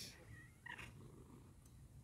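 Domestic cat purring while being brushed with a grooming glove: a faint, steady low rumble.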